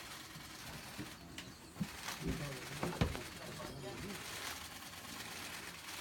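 Low, murmured voices, with one sharp click about three seconds in, over a faint steady outdoor background hiss.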